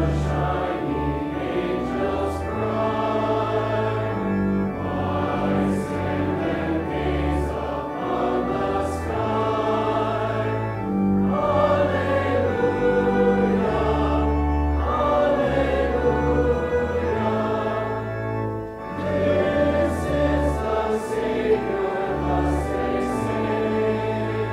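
Congregation singing a verse of a hymn in unison, accompanied by organ, with held bass notes changing every second or two beneath the voices.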